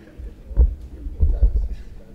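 Deep thuds from a handheld microphone being handled, in two clusters, about half a second and a second and a half in, with faint murmured voices.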